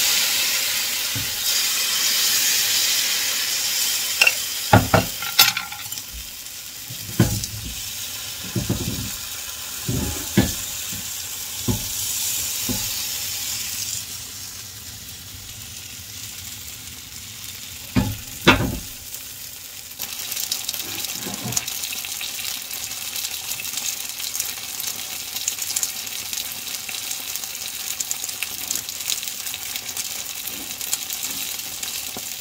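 Bánh xèo batter sizzling in a hot frying pan on a gas burner, loudest at first, dying down in the middle and picking up again later. Several sharp knocks and clinks against the pan come in the first half and a loud pair near the middle.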